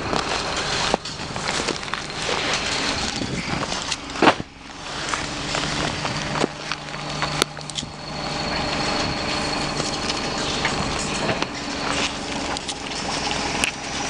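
Steady rushing hiss of steam and hot water escaping from a burst district-heating main, with scattered knocks and crunches, the loudest a thump about four seconds in.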